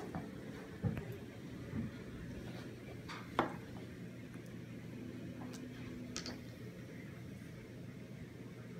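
Quiet room with a steady low hum, broken by a few light knocks and clicks as small plastic food-colouring bottles are handled and set down on a wooden table, the sharpest about three seconds in.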